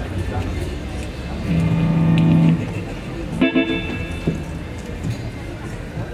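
Electric guitar sounding a few isolated plucked notes and one held note, not a song: a sound check or noodling between songs, over low background chatter.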